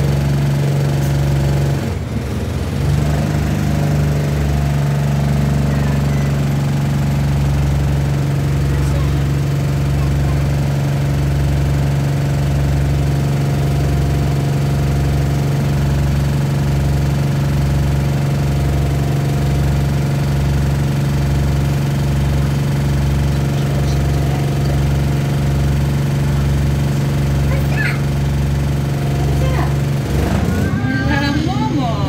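Alexander Dennis Enviro200 bus's diesel engine idling while the bus stands still, heard inside the saloon: a steady hum with a low pulsing about once a second.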